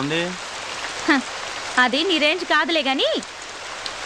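Steady hiss of rain throughout, with a few words of speech about two seconds in.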